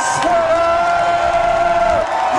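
Concert crowd cheering and shouting, with one long steady held note over it.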